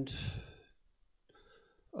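A man's breathy sigh out, close to a microphone, fading within about half a second, then a fainter intake of breath near the end.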